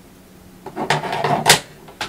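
Small objects being rummaged and handled, with a sharp click about a second and a half in.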